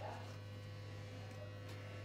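Steady low hum with a thin, constant higher tone above it and no other events.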